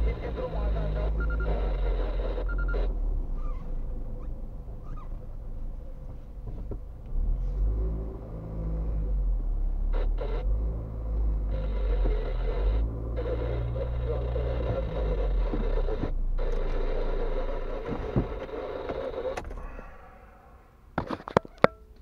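Car cabin interior as the car is driven slowly and pulls into a parking space: engine and road rumble, with the engine pitch rising and falling. Near the end the rumble drops away and a few sharp clicks follow.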